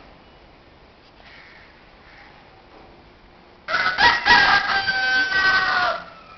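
A rooster crowing once, loud, starting a little over halfway in and lasting about two seconds, its long drawn-out final note falling slightly in pitch.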